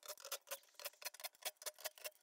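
Faint, irregular light clicking from a cordless drill fitted with a socket, worked on the bolts of a fuel tank's sender cap.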